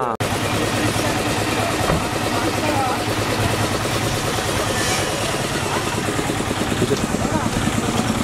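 A vehicle engine running steadily in a busy street, under the chatter of voices nearby.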